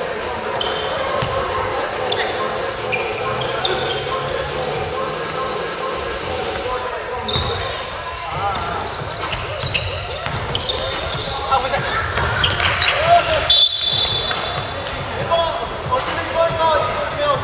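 Basketball game sounds in a gymnasium: the ball bouncing on the wooden court, sneakers squeaking, and players' shouts echoing around the large hall, getting busier and louder near the end.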